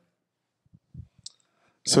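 A pause in speech with a few faint clicks and a soft low thump: handling noise from a handheld microphone being lowered. A man starts speaking near the end.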